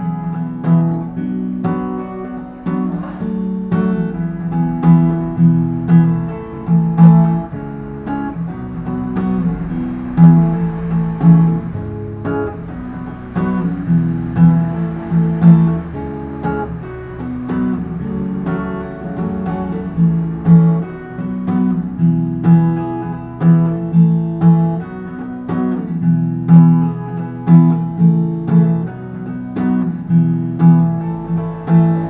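Acoustic guitar with a capo strummed in a steady down-down-up-up-down-up-down-up pattern, ringing chords that change every bar or so through the chorus progression.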